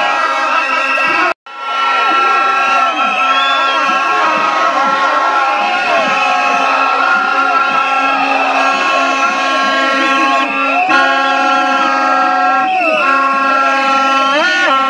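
A crowd at a street rally shouting and chanting over loud, steady, blaring horn tones held for seconds at a time. The sound cuts out for a moment about a second and a half in.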